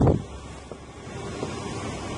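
Wind on the microphone over a low steady outdoor rumble, with a brief louder burst at the very start.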